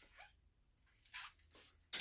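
Soft, brief rustles of a knit sweater and its clear plastic hanger being handled and set aside, with a sharp click near the end.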